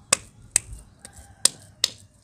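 Wet mud being patted and slapped between the hands into a ball, four sharp wet smacks at uneven intervals.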